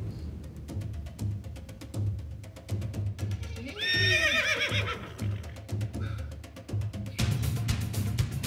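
A horse whinny sound effect about four seconds in, lasting about a second, played as a gag for a knight opening, over background music with a steady beat.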